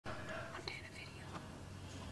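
Faint whispering from a person close to the microphone, over a low steady hum.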